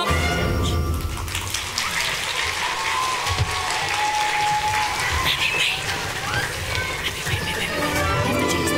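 Audience applauding and cheering at the end of a musical number, with scattered high shouts among the clapping.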